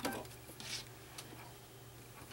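Faint handling of soft fabric at a stopped sewing machine: a soft rustle a little before the one-second mark and a small click just after it, over a low steady hum.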